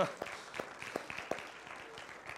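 Congregation applauding with scattered hand claps that thin out and fade toward the end.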